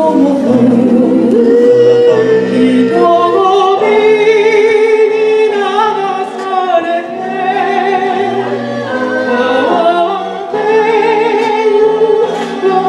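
Mixed male and female vocal group singing a cappella in harmony through microphones, with brief breaks between phrases about six and ten seconds in.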